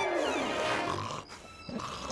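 A cartoon dog's growly vocalisation, falling in pitch over about a second and then fading out.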